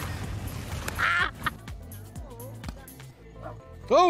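Water splashing and churning as a sit-on-top kayak capsizes. A short, honking, quack-like call follows about a second in.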